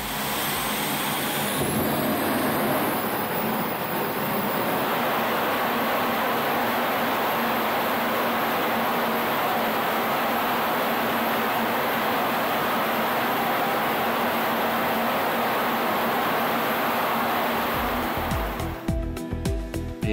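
Small gas turbine combustion rig firing, its hot exhaust jet making a steady, loud rushing noise, with a faint high whine rising in the first couple of seconds. The noise stops shortly before the end.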